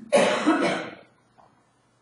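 A person coughing: one harsh burst just under a second long in the first half.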